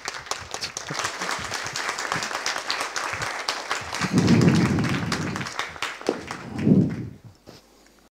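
An audience applauding at the end of a lecture, a dense patter of hand claps that dies away near the end. Two louder, low, muffled sounds close to the microphone come about four seconds in and again near the end.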